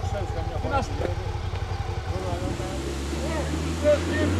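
A vehicle engine running under voices, with a low rumble at first and a steady low hum from about halfway through.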